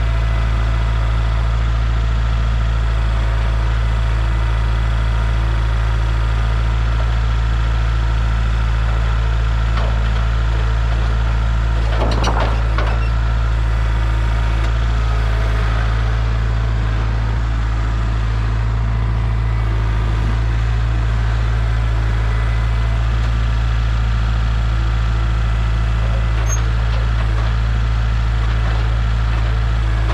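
Kubota L4701 compact tractor's diesel engine running steadily, with a brief clatter about twelve seconds in.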